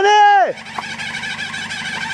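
A person's short, loud yell at the start, about half a second long, rising and then falling in pitch, over the steady drone of a vehicle engine.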